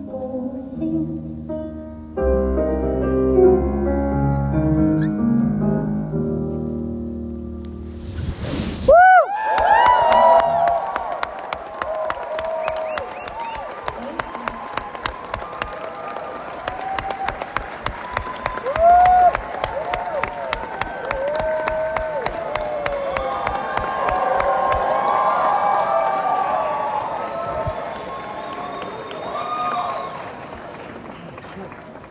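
A song's last sustained notes ring out and stop about nine seconds in. A concert audience then breaks into applause, cheering and whistling, and the applause carries on to the end.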